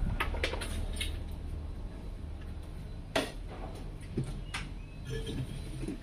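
Faint steady low hum, strongest in the first two seconds, with a few scattered small clicks and taps.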